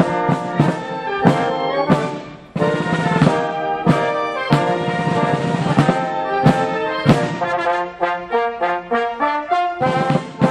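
Wind band (orchestre d'harmonie) playing, brass to the fore with trumpets and trombones, over drum strokes on a steady beat. The music breaks off for a moment about two and a half seconds in, then resumes, and quicker repeated notes follow near the end.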